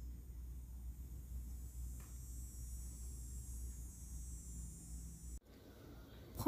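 Faint steady low hum with a light high hiss, like room tone or a background appliance; one faint tick about two seconds in, and the hum breaks off suddenly near the end.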